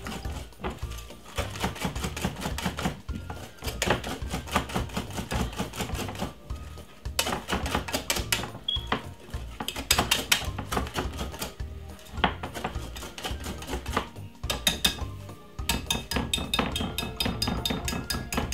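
Wire whisk beating sponge-cake batter in a glass bowl: a fast, continuous clatter of wire tines ticking against the glass, with a few brief pauses. Background music plays underneath.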